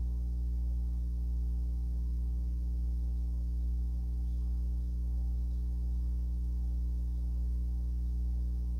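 A steady low electrical hum made of several evenly spaced tones that never change. The light brush strokes on the paper are not heard over it.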